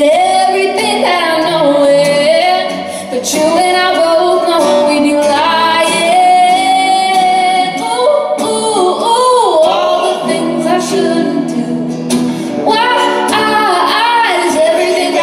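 A woman singing a slow melody with long held notes, accompanied live by an acoustic guitar and an electric guitar.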